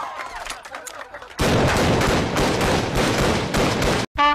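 Rapid gunfire: a dense, unbroken volley that starts abruptly about a second and a half in and cuts off suddenly near the end.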